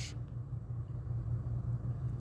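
A steady low hum with faint hiss.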